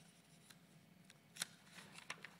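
Faint handling of a paperback book as its pages are turned: soft paper rustles and a few light, crisp ticks, the loudest just under a second and a half in.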